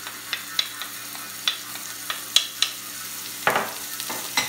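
Wooden spoon scraping and tapping chopped carrot off a ceramic dish into a frying pan of oil: a handful of sharp taps and a louder rasping burst about three and a half seconds in, over a faint sizzle as the carrot starts to soften in the oil. A low steady hum sits underneath.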